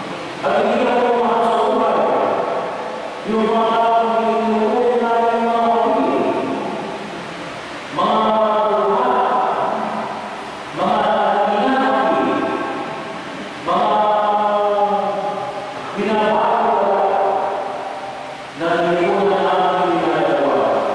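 Liturgical chant at Mass: a voice sings in held, chanted phrases a few seconds long, each starting strongly and fading away before the next.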